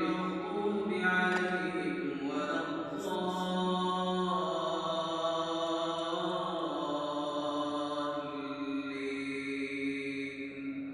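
An imam reciting the Quran aloud in a long melodic chant during congregational Maghrib prayer: a single voice holding drawn-out notes that slide slowly up and down in pitch.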